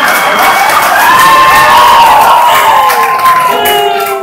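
A theatre audience cheering and shouting loudly, with high whoops rising over the crowd noise, easing a little near the end.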